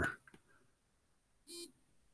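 A pause of faint room tone, broken about one and a half seconds in by one short, pitched voice sound such as a brief hum or throat noise.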